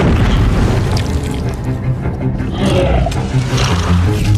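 Dramatic film score with deep booming hits and heavy low rumble. There is a sharp boom right at the start.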